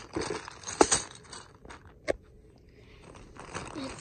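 Plastic rustling and handling noise as a zip bag of plastic fraction tiles is taken out of a plastic storage bin. Two sharp clicks stand out, the louder a little under a second in and another about two seconds in.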